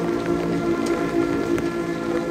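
A marching band holding a steady sustained chord, with scattered sharp ticks of heavy rain falling.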